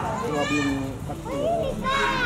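Children's high-pitched voices chattering and calling out.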